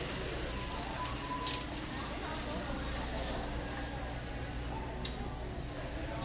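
Big-box store ambience: a steady low hum with indistinct background voices and a few soft clicks.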